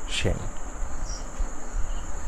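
Steady high-pitched background drone over a low rumble, with one short spoken syllable right at the start.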